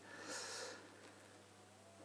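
A man's short, soft intake of breath during a pause in speech, then near silence.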